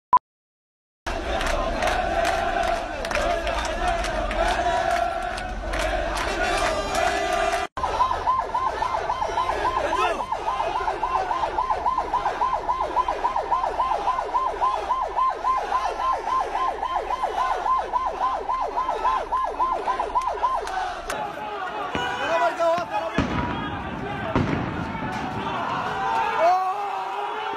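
A loud crowd of protesters shouting. From about eight to twenty seconds in, a vehicle siren warbles rapidly over them, about four rises and falls a second. It opens with a single short countdown beep.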